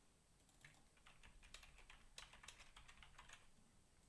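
Faint computer keyboard typing: a quick, irregular run of keystrokes that stops a little before the end.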